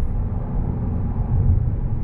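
Dodge Challenger SRT's Hemi V8 and tyres heard from inside the cabin while cruising at highway speed: a steady low rumble with no change in pitch.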